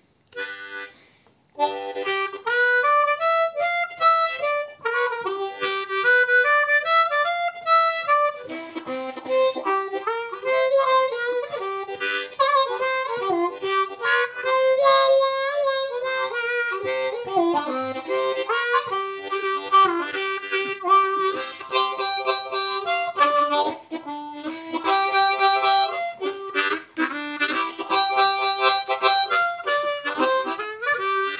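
Customized Suzuki Olive diatonic harmonica in C, with phosphor-bronze reeds, played solo: a continuous melodic run with notes bending and sliding up and down. It begins about a second and a half in.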